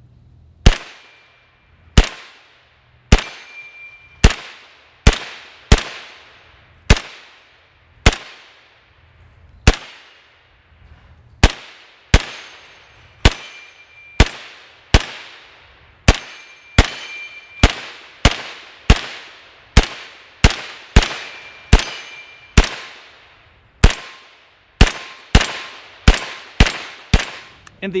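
Sterling Mk.6 9mm semi-automatic carbine firing about thirty single shots at an uneven pace, roughly one a second and quicker toward the end. A short ringing tone follows several of the shots as bullets strike steel plates.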